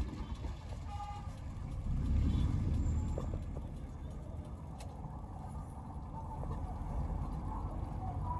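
Inside a moving car's cabin: steady low engine and road rumble, swelling briefly about two seconds in, with a short faint car-horn toot about a second in.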